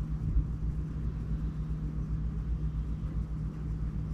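A steady low hum of room background noise, unchanging throughout.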